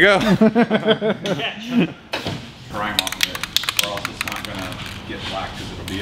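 A man's voice, then about three seconds in, a rapid run of sharp clicks lasting about a second, like a rattle.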